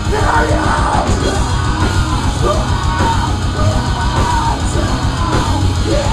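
A rock band playing live, with electric guitars, bass and drums, and a vocal line over the top.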